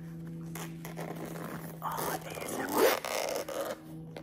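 Zipper on a Viture XR glasses' hard-shell carrying case being pulled open: a rasping zip of about a second, starting about two seconds in.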